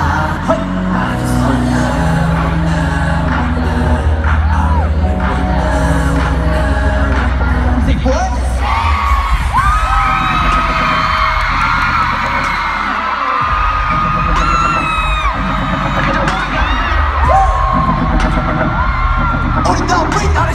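Live pop music played loud through a stadium sound system. From about eight seconds in, high drawn-out screams from the crowd rise over it.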